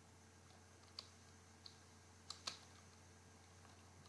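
A few faint, irregularly spaced keystrokes on a computer keyboard over a steady low hum.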